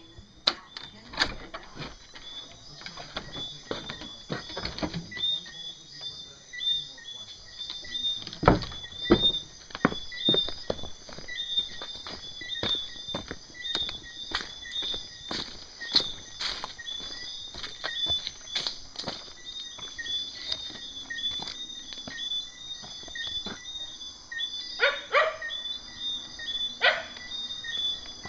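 Night insect chorus of crickets chirping in fast, evenly repeating pulses, over scattered knocks and rustles of a phone being handled close to the microphone.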